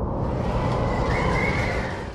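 Logo-intro sound effect: a loud, dense rumbling whoosh that brightens with hiss from the start, with a faint rising tone about a second in.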